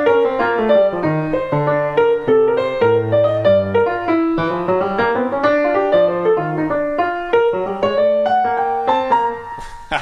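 Grand piano played in two independent lines: a moving left-hand bass line under a freely improvised right-hand melody in jazz style. The notes fade out near the end.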